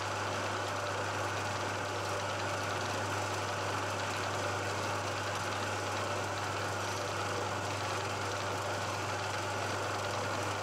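Milling machine running steadily with a constant low hum, its spindle turning an edge finder.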